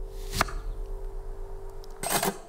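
Soundtrack of a short experimental film playing through theatre speakers: a steady low drone with a single sharp crack about half a second in.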